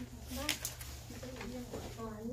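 Indistinct chatter of students' voices in a room, with a short sharp click or knock about half a second in.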